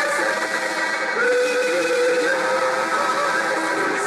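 Church choir of women and men singing, holding long sustained notes.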